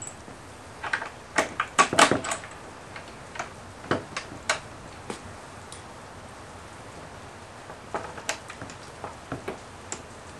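Rugged Buddy folding steel sawhorse leg being fitted into its steel mounting bracket. It makes irregular sharp metal clicks and knocks, in a cluster about a second in, a few around four seconds, and another cluster near the end.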